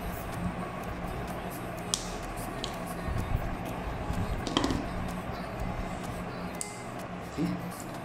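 Side-cutting nippers snipping through the old, brittle plastic of a model kit part: a few sharp clicks spaced out over several seconds, over a low steady hum.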